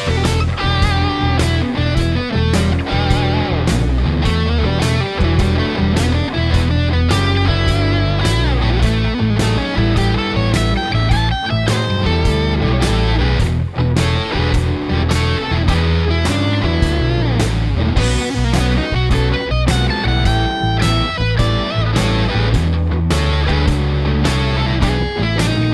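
Electric guitar improvising a blues lead solo built mostly on the E blues scale, played over a blues backing track with bass and a steady beat.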